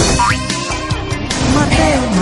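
Station-ident jingle: music with sound effects that slide in pitch, one sweeping up just after the start.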